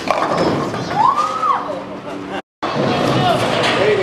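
Bowling alley sounds: a sudden clatter at the start as the rolled ball reaches the pins, then a voice calling out in one rising-and-falling cry. After a brief dropout, there is busy alley noise with voices.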